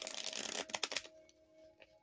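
A deck of tarot cards being riffle-shuffled by hand: a dense rattle of cards that lasts about a second, then dies away, over soft background music.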